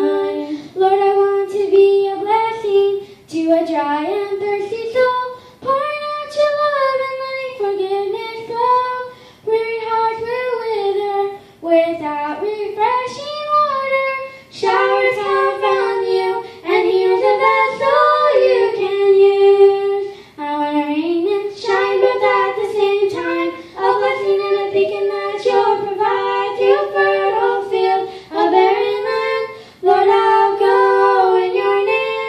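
Two young girls singing a gospel song together into handheld microphones, amplified through the church sound system, in sung phrases with brief breaths between them.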